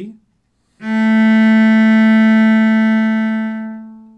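A cello bows a single long A (A3) in one slow down-bow stroke. The note starts about a second in, holds steady and fades out near the end. A short spoken word comes just before it.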